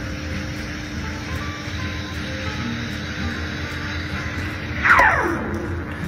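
Espresso machine steam wand hissing steadily into a stainless pitcher of spinning milk: the soft hiss of milk that has already warmed. Background music plays along, and about five seconds in a falling, swooping tone sweeps down.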